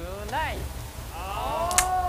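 A person's voice: a short rising-and-falling exclamation, then a long, high, drawn-out note that arches up and back down, with a sharp click near the end.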